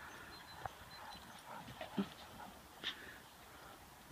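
Faint, short dog sounds from Great Danes playing in the distance, one about two seconds in and a sharper one just before three seconds.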